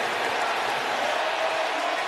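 Football stadium crowd cheering, a steady even roar, in reaction to an interception.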